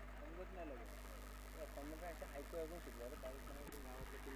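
Faint, distant voices talking over a steady low hum.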